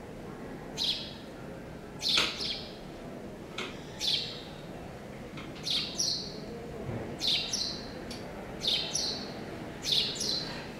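A bird chirping repeatedly: short, high, falling chirps, mostly in quick pairs, about every second and a half.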